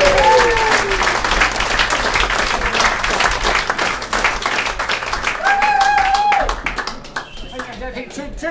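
A small audience applauding a band at the end of a song, with a voice calling out once, held for about a second, near the end of the applause. The clapping thins out about a second before the end.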